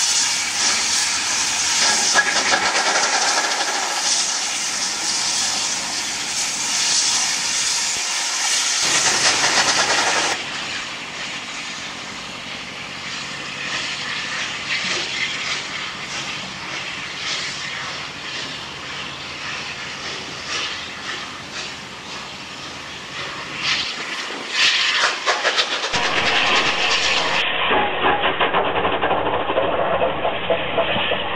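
Steam locomotive of the Southern Railway Battle of Britain class, a three-cylinder Bulleid Light Pacific, on the move, with loud steam hiss and rapid exhaust beats. The sound is louder for the first ten seconds and again over the last few seconds, and quieter in between.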